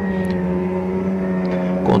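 Several race car engines running at a steady, unchanging pitch as the field circulates at an even pace under the yellow flag, waiting for the restart.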